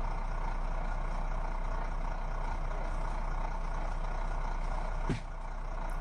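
A steady, unchanging engine-like hum with hiss, and a single sharp click about five seconds in.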